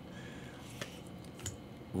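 Faint handling of a stack of trading cards in the hand, with a couple of light clicks as cards are slid and flipped over, above low room tone.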